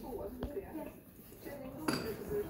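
Indistinct voices of people talking in the background, with a sharp click about half a second in and a louder clink near the end.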